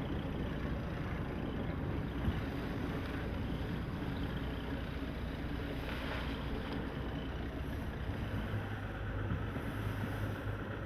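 Steady rush of wind and choppy water around a boat under sail, with a low steady hum coming in near the end.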